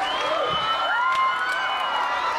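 A concert crowd cheering, with many high-pitched children's voices shouting and calling out at once.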